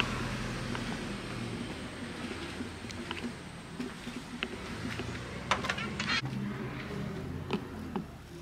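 Footsteps and an old wooden door being opened, with a cluster of knocks and a latch rattle a little past halfway, over steady road traffic noise that fades away.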